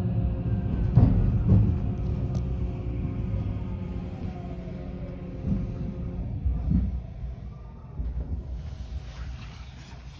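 Rumble inside an electric train's cabin as the train slows, growing steadily quieter, with a faint falling whine and a couple of wheel knocks about a second in.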